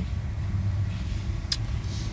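Steady low rumble of a car, heard from inside the cabin, with one short click about one and a half seconds in.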